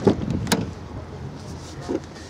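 Car door handling on a Hyundai i10: a sharp latch clunk about half a second in, then quieter handling noise with a soft knock near the end.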